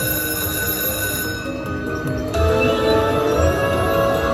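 Slot machine's electronic free-game music: sustained synth tones, growing louder about two seconds in with a low beat about once a second.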